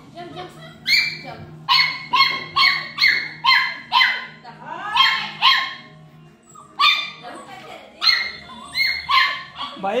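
A puppy yapping in a fast run of short, high-pitched barks, about one or two a second, with a brief pause a little past halfway. It is excitedly begging for a treat held out of reach above it.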